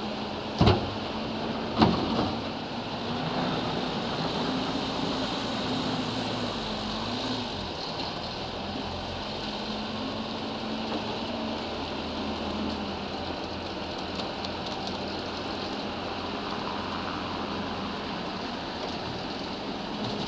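Manitou MLT telehandler's diesel engine running and revving up and down as it works a bucket of manure, with two sharp clanks in the first two seconds.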